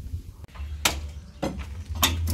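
Two short, sharp knocks about half a second apart, over a steady low rumble.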